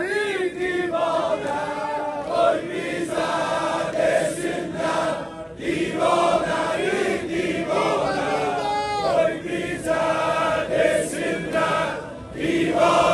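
A group of men chanting an Azeri mourning elegy (mersiye) in chorus, sung voices held in long lines with short breaks between phrases.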